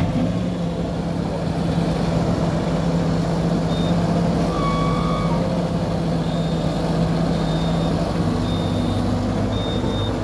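Volvo MC-series skid steer loader's diesel engine running steadily as the machine drives over dirt, its pitch shifting a little near the end. Faint short high beeps come and go in the second half.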